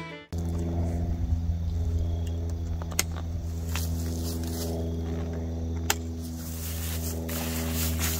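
A steady low mechanical hum with even overtones, a motor or engine running, with two sharp clicks about three and six seconds in. A fiddle tune cuts off at the very start.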